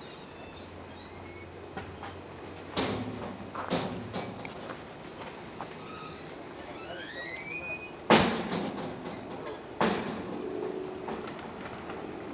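A few sharp knocks, loudest about eight seconds in, each followed by smaller clatters. Short high rising chirps come in between.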